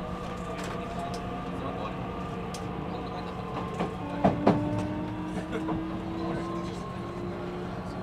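Keio 1000 series electric train running, heard from inside the car: the traction motor and inverter tones rise slowly as speed builds, over a steady hum and rail noise. A few sharp wheel knocks on the rails come about four seconds in.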